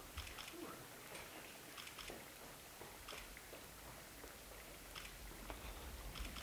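A bicycle rolling toward the microphone over a wooden boardwalk: faint scattered clicks from the planks and a low rumble that grows louder near the end as it comes closer.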